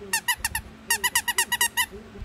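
Squeaker in a plush dog toy squeaking as a puppy bites it: about a dozen quick, high squeaks, a short run of four and then a faster run of about eight.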